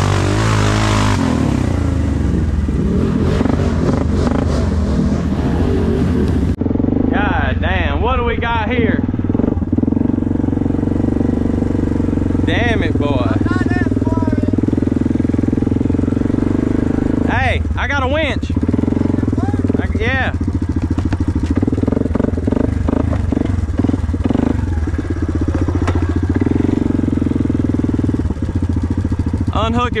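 Can-Am ATV engine running steadily as the quad is ridden along dirt trails, with short bursts of voices calling out over it several times.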